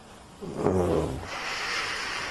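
A man's short wordless voiced sound, dipping in pitch, followed by about a second of breathy hissing.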